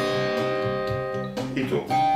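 Fender Stratocaster electric guitar: a C minor triad on the top three strings (G, B and high E) rings out and slowly fades, and another shape of the same triad is struck near the end.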